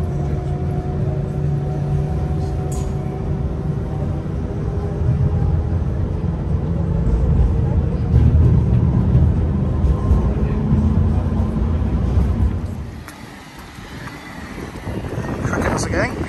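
Low, heavy rumble of a large vehicle running close by in street traffic, with a faint steady whine over it. The rumble drops away suddenly about thirteen seconds in.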